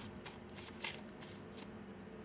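Faint handling of tarot cards: a brief card rustle at the start and another just under a second in, as a card is sought for a final piece of advice.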